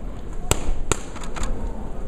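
Boxing gloves landing punches: two sharp smacks about half a second and a second in, then a few lighter ones, over steady arena background noise.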